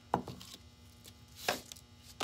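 Two light knocks on a tabletop about a second and a half apart, as a ribbon-tied ornament and a sprig of artificial greenery are handled and laid down.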